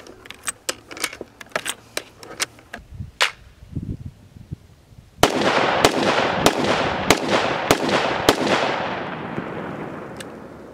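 Cartridges clicking one at a time into an AR-15 rifle magazine, with a few dull knocks. Then the AR-15 fires a string of about six shots roughly 0.6 s apart, each followed by a fading echo.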